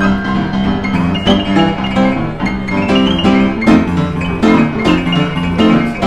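Upright street piano played by two people at once, four hands on the keys, in a rhythmic tune with repeated chords over a steady bass line.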